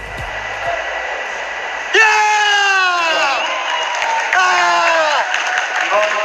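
Arena crowd noise with two long, loud shouts from a voice, each falling in pitch, about two seconds in and again about four and a half seconds in.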